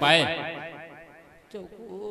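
A monk's voice singing a Thai sung sermon (thet lae) through a microphone. He draws out a long wavering note that fades away, then starts another held note about a second and a half in.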